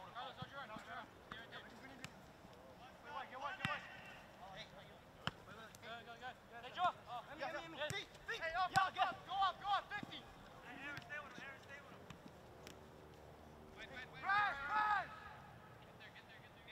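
Soccer players shouting and calling to one another across the field, with a loud shout near the end. A few sharp knocks of the ball being kicked come between the calls.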